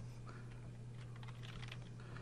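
Faint typing on a computer keyboard, a handful of soft keystrokes, over a steady low hum.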